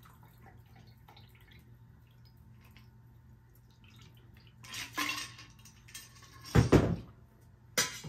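A shaken cocktail is double-strained from a glass-and-steel shaker through a fine-mesh strainer into a stemmed glass: a faint trickle of liquid, then a clatter of metal and glass as the shaker and strainer are handled. Near the end comes a single loud, deep knock as the gear is set down on the wooden bar.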